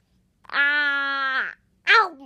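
A young girl's drawn-out open-mouthed 'aaah', held on one steady pitch for about a second and dropping as it ends, followed near the end by a short, loud falling cry.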